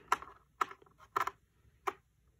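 Small screwdriver clicking against the screws and plastic bottom cover of a laptop as the case screws are backed out: four or five sharp separate clicks, roughly half a second apart.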